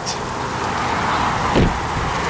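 A car's passenger door swung shut, closing with a single thump about a second and a half in, over a steady hiss.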